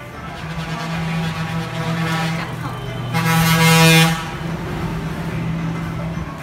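A horn blaring over a low steady drone, loudest in a blast of about a second just past the middle.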